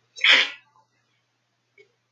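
A single short sneeze from a man, loud and abrupt, lasting about half a second. Near the end there is a faint click.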